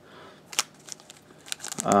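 Hard plastic graded-card cases being handled and turned over in a foam tray: a few light clicks and taps, one about half a second in and a cluster near the end.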